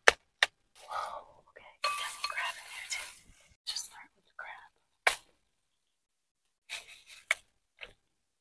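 Disposable plastic gloves and a plastic seafood-boil bag rustling and crinkling as crab legs are pulled out of the bag, with a few sharp clicks. After about five seconds it is mostly quiet, with a few short rustles and a click near the end.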